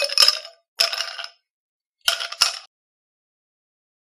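A clinking sound effect: three short bursts of glassy or metallic clinks with dead silence between them, the third a quick double strike, ending about two and a half seconds in.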